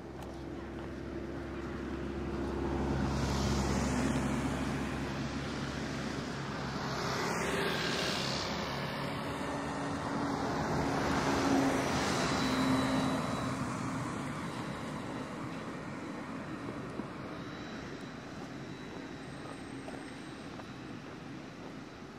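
Road traffic passing along a town street in several swells, loudest about twelve seconds in, when an electric trolleybus passes close by.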